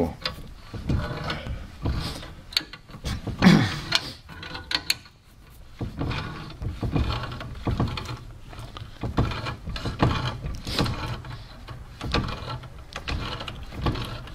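Wrench turning a steel nut off a carriage bolt with damaged threads in a chair's swivel tilt mechanism. It makes repeated metallic clicks and scrapes, a couple each second, as the nut is worked round stroke by stroke.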